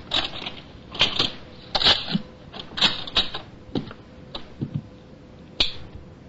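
Sound effect of a locked door being worked open: a run of sharp, irregular metallic clicks and rattles, roughly one every half second.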